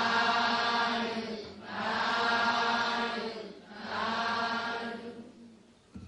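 A congregation of Buddhist nuns and lay followers chanting in unison: three long drawn-out calls with short breaks between, fading out near the end, as the merit-sharing response that closes the sermon.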